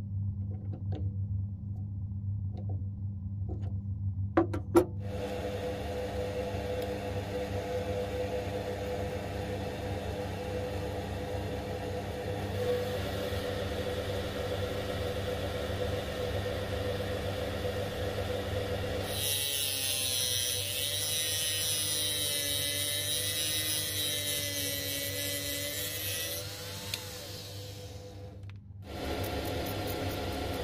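Small metal lathe switched on after two sharp clicks about four seconds in, its motor then running with a steady tone. Past the middle, a loud hissing scrape for about seven seconds as abrasive is held against a spinning brass pin, then the lathe runs on with a brief dip near the end.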